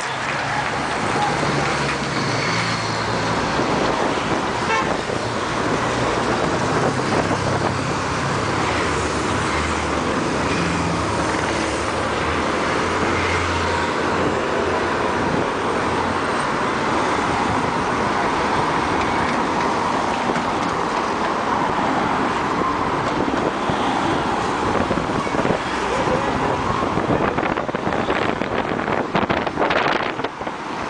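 Race team cars driving past in a steady line, engines running and horns tooting, over continuous road and crowd noise.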